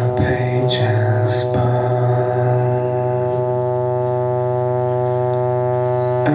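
Live band music, slow and droning: electric guitars hold a sustained chord, with some bending swells in the first second and a half.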